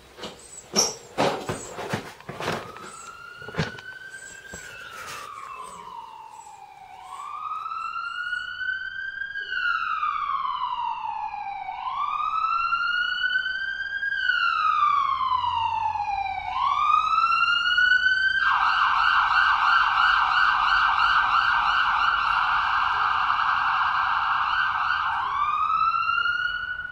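A few sharp clicks at first, then a siren: a slow wail rising and falling about every five seconds, which switches near the end to a fast yelp.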